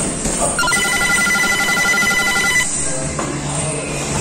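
An electronic bell rings in a rapid trill for about two seconds, over background music.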